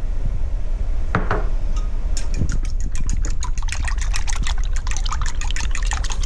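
Melted butter being poured into a ceramic bowl of egg and milk mixture, then a metal fork beating the mixture, clinking rapidly against the sides of the bowl from about two seconds in.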